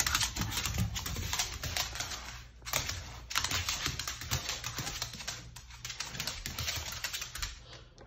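A beagle's claws clicking on a tile floor as it walks: a quick, irregular patter of clicks with a short pause about two and a half seconds in.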